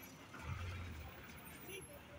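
Road traffic passing: a low vehicle rumble swells about half a second in and eases off a second later.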